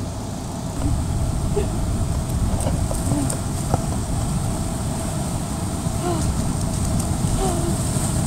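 Waves washing up the beach and wind on the microphone, a steady low rumble that grows louder about a second in, with faint voices now and then.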